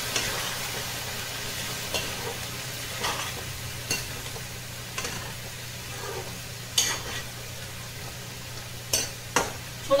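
A metal spatula stirring food in a black kadai, striking and scraping the pan about seven times, with the loudest knocks near the end. A low sizzle of frying runs underneath.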